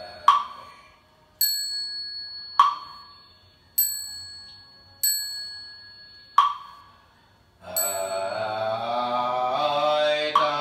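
Buddhist ritual percussion struck in turn during a pause in the chanting: three sharp knocks alternating with three strikes of a bell whose high ringing tone carries on for seconds between strikes. Near the end, group chanting in unison starts again.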